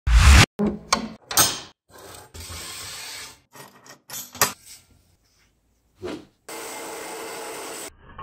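Rectangular steel tubing being slid, knocked and clamped on the base of an abrasive chop saw: metal scraping and clunks, starting with a loud low clunk. The sounds come in short snippets that break off suddenly, with stretches of steady hiss in between.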